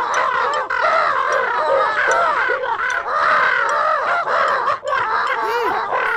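High-pitched cartoon character voices chattering in nonsense syllables: a fast, continuous run of short squeaky rising-and-falling calls, several overlapping.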